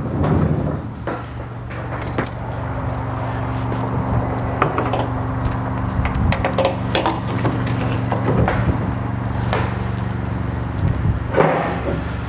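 Rolling tarp (conestoga) curtain system being pushed back along a step deck trailer's side rails: metal bows and rollers clanking and rattling in the track over a steady low hum.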